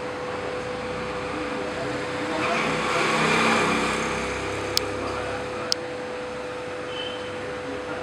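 Automatic wire-forming machine for scaffolding G pins running: a steady hum, a louder noisy swell in the middle, and two sharp clicks about a second apart.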